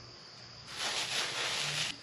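Plastic packing wrap rustling and crinkling as a wrapped part is handled, starting a little under a second in and stopping just before the end.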